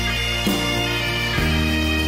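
Instrumental passage of a song led by bagpipes, with steady held drone tones and a bass line that changes about a second and a half in.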